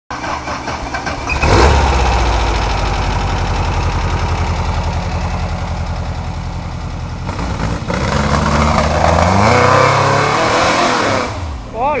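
Off-road buggy's rear-mounted engine revving hard under load as it climbs a steep dirt trail. It surges about a second and a half in, runs steadily, then revs up again with a rising pitch in the second half.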